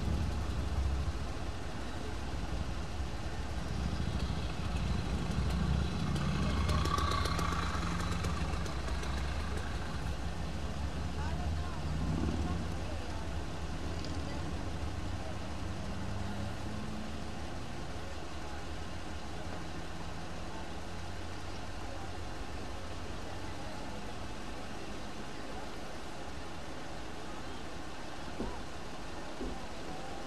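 Steady low rumble of idling vehicle engines, a little louder in the first ten seconds and then even.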